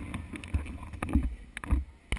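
Handling noise on the camera's microphone: uneven low rumble with many small knocks and rubs as the camera is taken in hand and turned round, mixed with wind buffeting.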